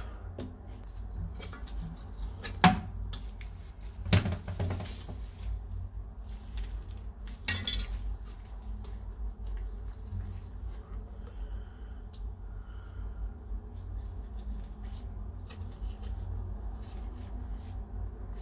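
Screwdriver working loose a metal shower floor drain strainer: scattered metal clinks and scrapes against the grate and tile, with a few sharper clinks, the loudest nearly three seconds in.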